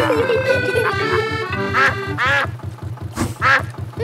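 Cartoon duck quacking several times in the second half, over light background music. Under it runs a steady, rapid low chug from the canal boat's engine.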